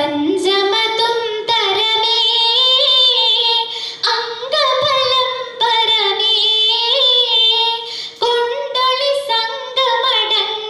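A girl singing solo and unaccompanied into a microphone: one voice holding long notes with wavering ornaments, in phrases separated by short breath pauses.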